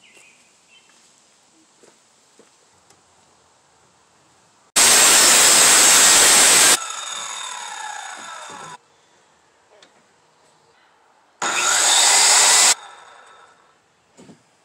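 A power saw cutting wood twice: a loud cut of about two seconds, then a shorter one of about a second near the end. After each cut the blade winds down with a fading whine that falls in pitch.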